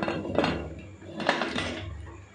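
Aluminium pressure cooker lid being fitted onto the cooker: metal clanks and scrapes, three clanks in all, with the last one about a second and a quarter in ringing the longest.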